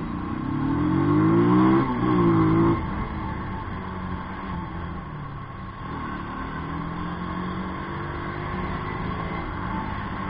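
Motorcycle engine pulling away from a stop, revs rising, with a break about two seconds in where they rise again from lower, as at a gear change. Near three seconds in the revs drop and the engine runs on at steadier cruising revs, creeping slowly upward.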